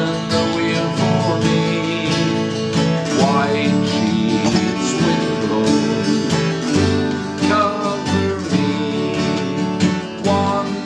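Steel-string acoustic guitar, capoed, strummed steadily as it accompanies voices singing a folk song together.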